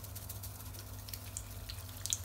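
Water in an indoor goldfish pond running and bubbling steadily from its filtration and aeration, with many faint small crackling pops and a low steady hum underneath.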